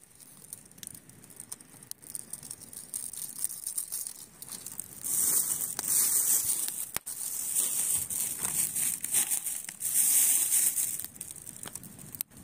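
A plastic bag being rummaged through, crinkling and rustling in bursts that are loudest in the second half, with a few sharp clicks.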